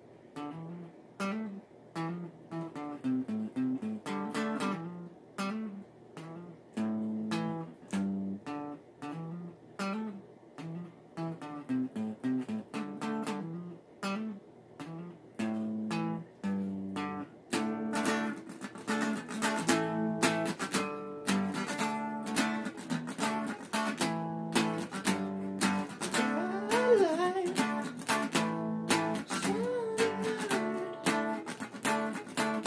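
SG-style electric guitar playing a song intro, picked note by note at first, then fuller and busier chords from about halfway through.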